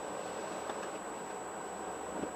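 Steady hum and hiss inside a car idling while stopped in traffic, with a faint high whine throughout and a couple of small clicks.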